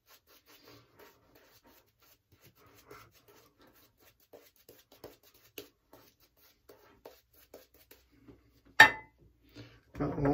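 Faint rubbing and small ticks of a lather-laden shaving brush worked over the cheeks and chin, with one sharp knock about nine seconds in.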